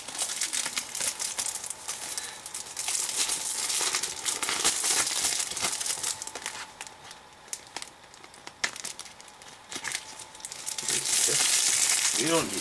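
Blu-ray packaging being handled close to the microphone, crinkling and rustling unevenly, with a quieter stretch past the middle and louder again near the end.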